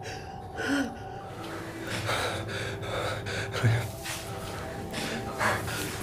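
A woman gasping and sobbing in fright: a run of ragged, breathy gasps with a few short whimpers.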